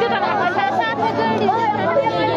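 Several women's voices overlapping at once, crying and talking over each other, with crowd chatter behind.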